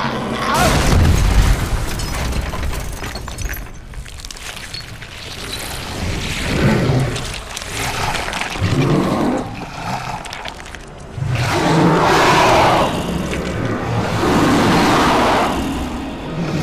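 Movie fight sound effects: a heavy thud as a body is slammed into the floor about a second in, then several loud rough vocal bursts of grunting or growling, with film score beneath.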